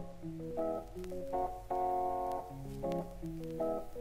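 Progressive rock intro: a keyboard plays a solo melodic line of short, separate notes stepping up and down, over a low steady hum.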